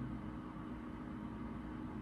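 Steady low hum of room noise, a few fixed tones over a faint hiss, with no other events.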